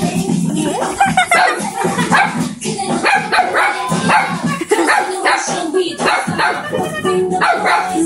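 Small dogs barking repeatedly and excitedly at chicken feet held out above them, over background music with singing.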